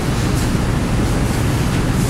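Steady room noise: a low hum under an even hiss.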